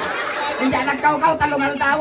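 Overlapping voices: several people talking at once.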